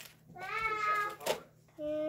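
A single drawn-out, high-pitched vocal sound lasting about a second, then a short steady held tone starting near the end.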